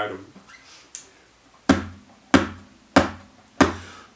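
Four evenly spaced percussive knocks, a little over half a second apart, each with a short ring, counting in a song.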